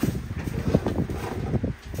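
Plastic tub sliding and scraping across a metal wire shelf, a run of irregular rattling clicks.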